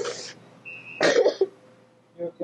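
A person makes two sharp, breathy cough-like bursts about a second apart, with a brief high squeak just before the second.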